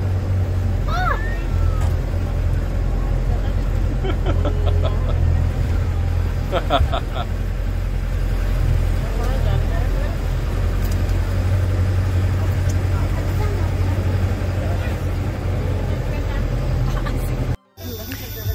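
Bus engine drone heard from inside the passenger cabin, a steady low rumble with passengers' voices over it. It cuts off abruptly near the end.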